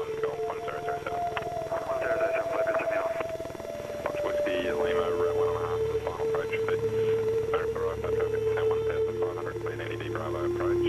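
Broken, radio-like voices that are never clear enough to make out, over a music score of long held notes that step down in pitch. A low steady rumble joins about halfway.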